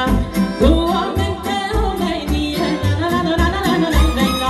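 Live Moldovan folk dance music: a woman sings a melody with gliding, ornamented notes into a microphone over an amplified taraf band with violin and accordion, and a strong bass pulses on a steady beat of about two a second.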